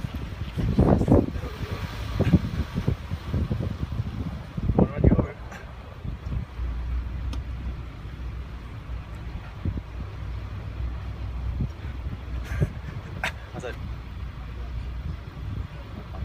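Mazda MX-5's four-cylinder engine and tyres giving a steady low rumble as the car drives slowly along a street, with some louder bursts in the first five seconds.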